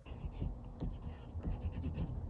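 Writing on a folded paper card: a series of short, irregular scratching strokes.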